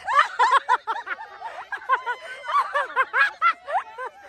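High-pitched laughter from the onlookers, a quick run of short repeated ha-ha sounds, several a second, with a brief rising shout near the end.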